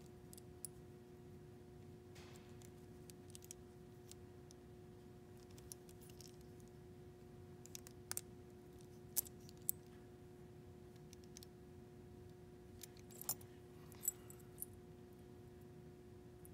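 Small steel pistol parts clicking and ticking against each other as the trigger bar is worked loose from the sear housing by hand. There are scattered light clicks, with a few sharper ones about halfway through and again near the end, over a faint steady hum.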